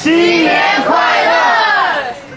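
A group of people shouting together in one loud, drawn-out cry that starts suddenly and breaks off after about two seconds.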